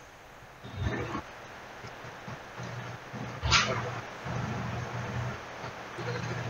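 A cushion being tossed about in a room: a steady low hum with two short sudden noises, one about a second in and a louder, sharper one midway.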